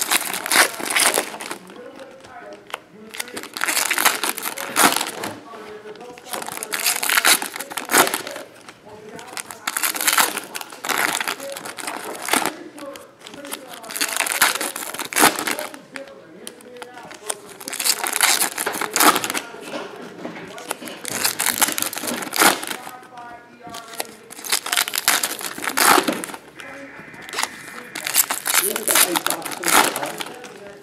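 Foil wrappers of OPC Platinum hockey card packs crinkling and tearing in repeated bursts, each lasting about a second and coming every one to three seconds, as the packs are torn open and the cards handled.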